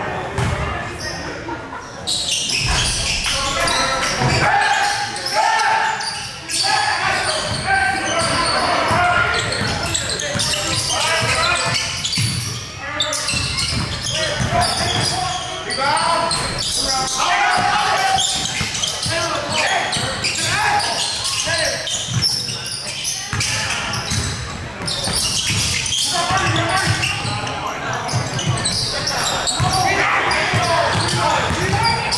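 Basketball bouncing on a hardwood gym floor during live play, amid many indistinct voices, all echoing in a large gym.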